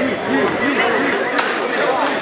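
Crowd of spectators talking and calling out at once: many overlapping voices with no clear words.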